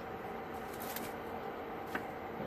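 Plastic wrap crinkling and rustling as it is pulled apart and handled, with a few small clicks. A faint steady hum runs underneath.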